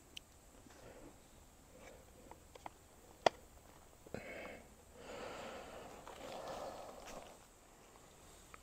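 A trail camera being handled on its post, faint: a few small clicks and one sharp click about three seconds in, then soft rustling noise for a few seconds.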